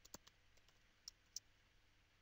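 Faint clicks of computer keyboard keys as a password is typed: a few in quick succession at the start, then two more about a second in.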